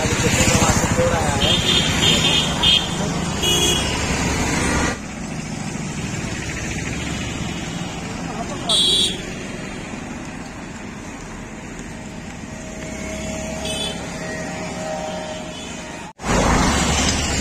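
Roadside traffic noise, louder for the first few seconds and then dropping suddenly. Short high-pitched beeps, like vehicle horns, sound several times, the loudest about halfway through.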